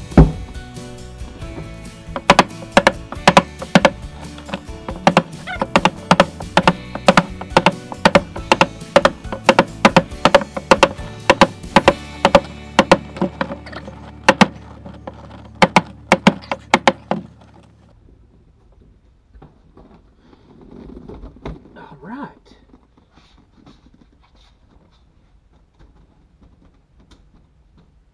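Background music with a steady beat, about two strikes a second, that stops about 17 seconds in; after that only faint room sound.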